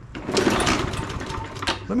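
Briggs & Stratton EXi 625 push-mower engine being pull-started, turning over for about a second and a half with a fast, even rhythm but not catching. The carburetor bowl may have run empty.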